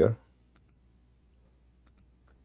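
A few faint computer mouse clicks, one about half a second in and a couple more near the end.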